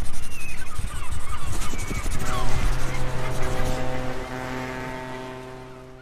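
Logo-sting sound design: a dense burst of whooshing, crackling effects, then from about two seconds in a held musical chord that fades out near the end.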